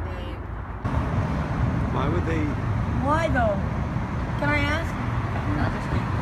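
Steady low road-traffic rumble that starts abruptly about a second in, with a person's wordless voice rising and falling in pitch three times over it.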